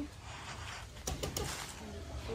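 Faint dove-like cooing over a low steady background rumble, with a few brief clicks or rustles about a second in.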